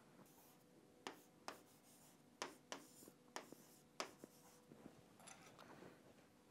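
Stylus pen tapping and sliding on the glass of an interactive touchscreen whiteboard while capital letters are written: a run of light, sharp clicks, a few a second, starting about a second in, with faint scratchy strokes between them.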